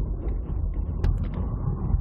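Steady low rumble of road and engine noise inside the cabin of a moving car, with a couple of light clicks about a second in.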